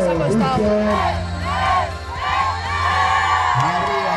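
A group of girls cheering and shouting together in a rhythmic run of high calls, over background music with a steady low beat.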